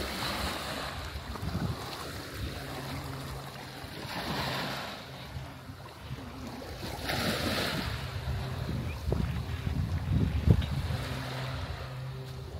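Small waves washing and splashing against a rocky shoreline, a wash every few seconds, with wind buffeting the microphone and a strong gust near the end. A faint steady hum runs underneath at times.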